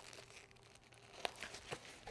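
Faint rustling of a fabric trolley bag and its contents being handled, with two light clicks in the second half.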